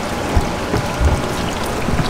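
Water splashing and dripping as a large catfish is lifted out of a water-filled cooler, over the steady rush of water flowing into the pond, with a couple of dull thumps about half a second and a second in.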